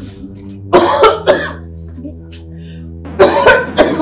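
A man coughing in two fits, one about a second in and one near the end, each of about three harsh coughs, over a low sustained music note.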